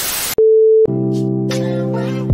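Television static hiss, then a single steady electronic test-card beep lasting about half a second. Music with a held chord starts about a second in.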